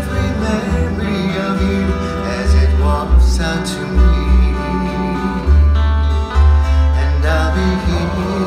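Live Hawaiian band music: an upright bass plucking deep, changing notes under plucked string instruments and men's voices singing.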